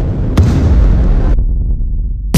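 Harsh noise passage in an industrial dubstep track: a loud, dense wash of distorted noise over heavy sub-bass, with a sharp hit about half a second in. About a second and a half in, the upper noise cuts off suddenly, leaving only the low bass rumble.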